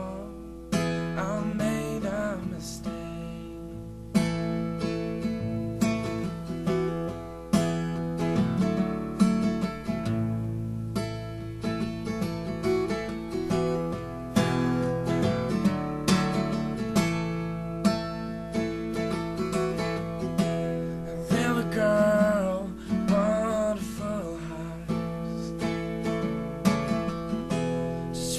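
Acoustic guitar strummed steadily, chords ringing under an even strumming rhythm. A sung voice comes in over it near the start and again about three quarters of the way through.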